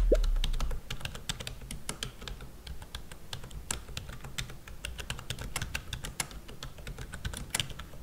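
Touch-typing on a Logitech MK235 wireless keyboard's low-profile membrane keys: a quick, uneven run of key clicks. A low background sound fades out in the first second.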